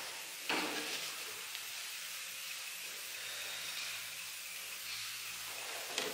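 Quiet room tone with a steady faint hiss, and one brief soft handling sound about half a second in.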